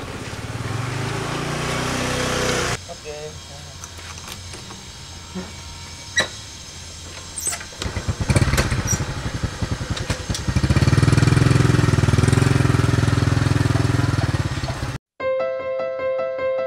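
A small motorcycle engine starting and then running as the bike pulls away, loudest and steadiest from about ten seconds in. It cuts off suddenly near the end, where piano music comes in.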